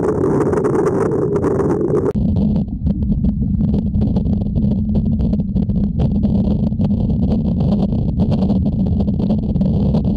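Steady underwater rumble of pool water and a swimmer's kicking, with many small clicks from splashes and bubbles. About two seconds in it changes abruptly to a deeper rumble.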